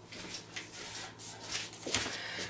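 Faint rustling and handling noises of someone moving things about, with a soft knock near the end.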